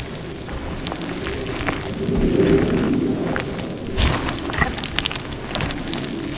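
Crumbly powder reforms being stirred and crushed with a spatula in a glass bowl of water, a steady crumbly crunching and crackling with many small clicks, growing fuller about two seconds in.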